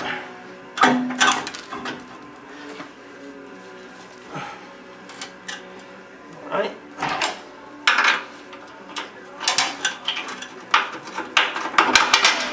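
Scattered metal clinks and knocks of a tubular steel lower control arm being shifted into its frame pivot mounts and its pivot bolts worked in by hand, coming thick and fast in the second half.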